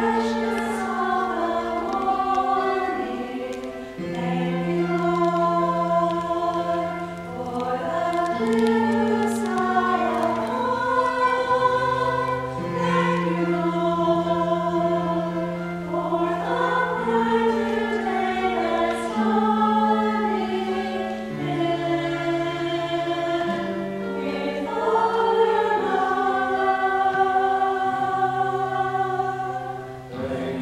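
Voices singing a slow hymn together, moving in long held notes that change every second or two.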